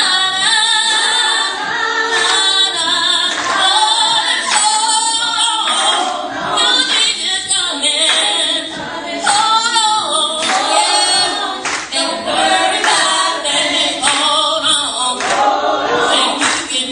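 A small gospel vocal group, women's voices to the fore, singing a song together through a church PA, with hand-clapping along.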